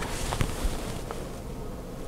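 Quiet handling of cotton quilt pieces: a faint fabric rustle with a few soft ticks.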